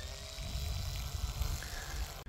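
Electric motor and propeller of a 1.2-metre RC T-28 model plane whining steadily at low throttle as it taxis, with wind rumbling on the microphone.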